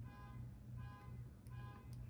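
Faint tones that pulse on and off at a regular pace over a low steady hum.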